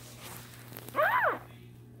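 A three-day-old boxer puppy gives one short cry that rises and falls in pitch, about a second in. She is unhappy at having elastic beading cord looped around her tail for banding.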